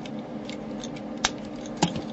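Clicks of a vintage G1 Snarl Transformers toy's plastic parts being worked by hand while its robot head is pulled out during transformation: a few light ticks, a sharp click about a second in and another near the end.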